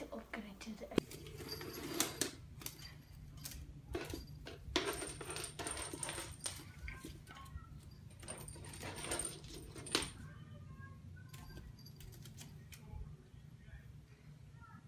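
Upturned wicker basket shuffling and knocking on a wooden floor, with the toy balls inside it rattling and jingling: a run of clicks and knocks with bursts of high jingling, busiest between about two and ten seconds in.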